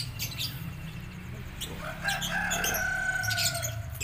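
Caged lovebirds chirping in short bursts. About halfway in, one long held call of about two seconds rises over them and sags slightly in pitch at its end.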